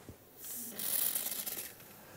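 Hiss of carbon dioxide escaping from a plastic bottle of carbonated water as the cap is loosened, a leak of gas from the fizzy water. It starts about half a second in and fades after about a second.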